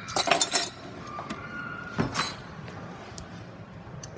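Clinking and clattering as a metal measuring scoop and a glass bottle are handled: a quick cluster of clinks about half a second in, a second knock and clink about two seconds in, and one small click later.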